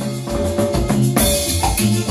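Live band playing: electronic keyboard over timbales, with steadily repeated percussion strikes and a crash about a second in.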